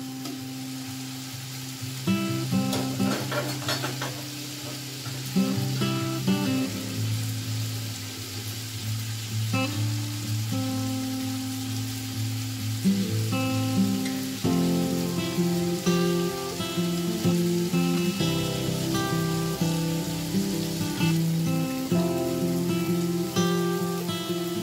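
Background music of plucked-string notes over a steady sizzle of tomatoes, green chillies and masala frying in oil in an aluminium pot.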